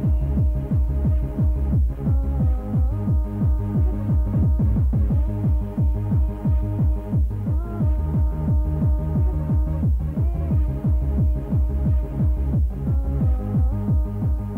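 Jungle / drum and bass DJ mix played from a 1990s rave cassette recording: a heavy, rapidly pulsing bass line under held synth tones that bend slightly in pitch, with little treble.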